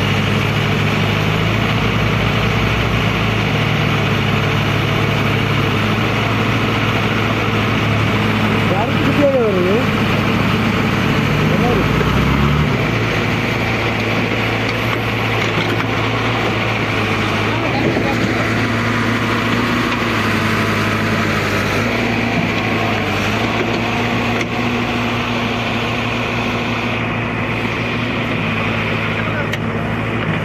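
Heavy diesel engines of a JCB 3DX backhoe loader and a tipper truck running steadily while the truck works its way out of soft ground. The low engine note shifts about twelve seconds in.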